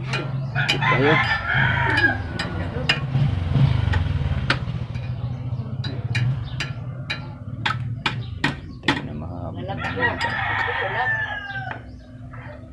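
A rooster crowing twice, once at the start and again about ten seconds in, over a steady low hum, with sharp clicks scattered between the crows.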